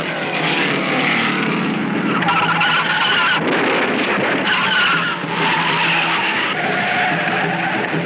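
A race car's engine running at speed, then long tyre squeals from about two seconds in as the car loses control and spins.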